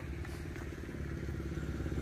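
A small engine running steadily with a low, even hum.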